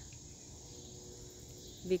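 Steady high-pitched chorus of insects, a continuous even drone.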